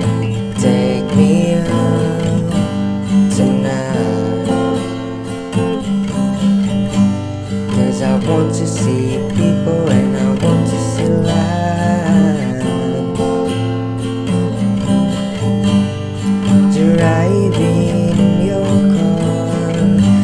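Acoustic guitar strummed in a down-down-up pattern, moving between A minor and G chords.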